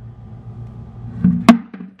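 Plastic protein-powder tub and scoop being handled, with one sharp plastic knock about one and a half seconds in as the lid goes back on, over a low steady hum.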